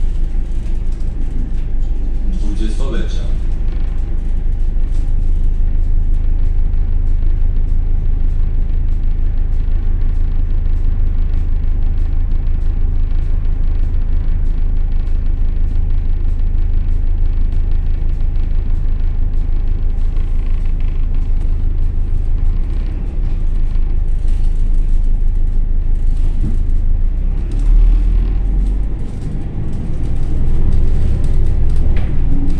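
Volvo B10BLE city bus heard from inside the passenger cabin while driving: a steady low engine drone with road rumble. A brief rising whine comes about two or three seconds in, and a heavier low thump comes near the end.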